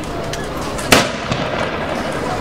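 A single black-powder blank shot from the pirate-battle reenactment: one sharp, loud bang about a second in, with a brief echo after it.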